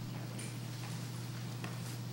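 A quiet pause with a steady low electrical hum and a few faint light ticks or rustles, about half a second in and again near the end.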